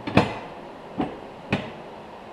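Three sharp knocks, the first the loudest, as a welded steel-tube front A-arm is loosened and worked free of its welding jig on the workbench.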